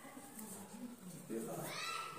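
A drawn-out, wavering vocal sound, low in pitch at first, then sliding sharply upward and getting louder near the end.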